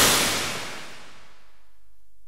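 Cinematic title sound effect: a loud noise swell, already under way, dying away over about the first second and leaving a low rumble underneath.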